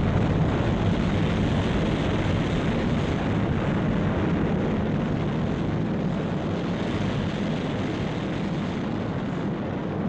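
Sound effect of a large rocket's engines firing on the launch pad just after ignition, with thrust building before liftoff. A steady, deep, dense rush that eases slightly in level toward the end.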